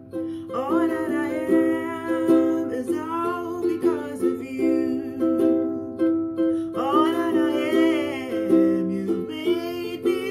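A woman singing a gospel praise song while strumming chords on a ukulele. Her voice comes in phrases and drops out for a few seconds in the middle while the ukulele chords carry on.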